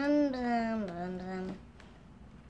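A young child's voice singing a wordless 'dum dum' tune: a held note that steps down in pitch about a second in and stops about halfway through.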